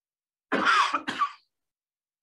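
A person coughing to clear the throat: two short coughs about half a second in, the second shorter.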